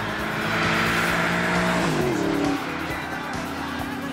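Supercharged V8 of a 2004 Mustang SVT Cobra with a Borla cat-back exhaust, held at high revs with tyres squealing in a burnout. The revs drop about two seconds in.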